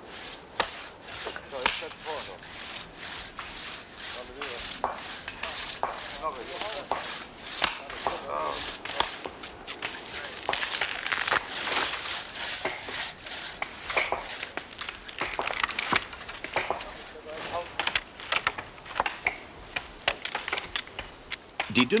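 Hand saw cutting through a tree trunk, a steady run of rasping strokes at about three a second.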